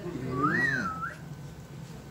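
A person whistling one short note about half a second in: it rises, falls, and holds briefly before stopping.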